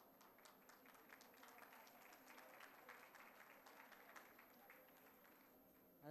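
Faint applause with many scattered hand claps, thinning out near the end.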